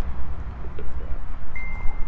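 Wind rumbling on the microphone, with one short, high, steady ringing tone near the end.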